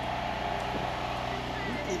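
A steady low mechanical hum under a wash of outdoor noise.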